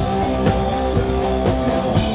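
Rock band playing live: loud electric guitars over drums beating about twice a second, with no singing.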